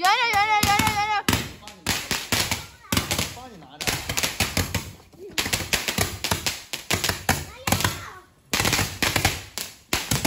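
Fireworks going off in rapid runs of crackling bangs, several bursts with short breaks between them, opened by a brief wavering high tone.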